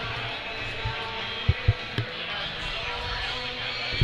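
Background music with guitar, with three short thumps about halfway through.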